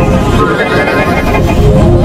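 A logo jingle's soundtrack run through heavy distortion and audio effects, turned into a loud, dense, noisy wash with faint tones buried in it.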